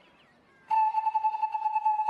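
Background music: after a near-quiet start, a single high melodic note comes in suddenly about two-thirds of a second in and is held steady, like a sustained flute tone.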